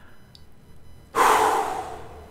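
A man blows out a loud, noisy breath through pursed lips, starting about a second in after a quiet pause.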